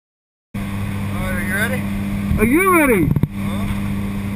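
Small jump plane's piston engine droning steadily inside the cabin, starting about half a second in, with a man's voice calling out twice over it, the second call rising and then falling in pitch.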